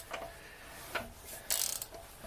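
Ratchet wrench on the crankshaft pulley clicking as the Triumph TR7 engine is turned over by hand, with a single click about a second in and a louder rasping run of clicks about one and a half seconds in. The engine still turns freely with the water pump housing bolted on.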